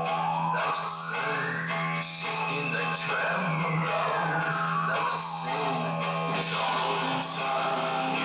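Music playing through the Lexus IS F's newly installed aftermarket car audio system, with a long tone that slowly rises and falls again.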